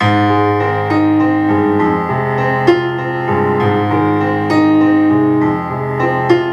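Piano introduction of a karaoke accompaniment track: sustained chords changing every second or two, starting suddenly, with a sharp accent about halfway through.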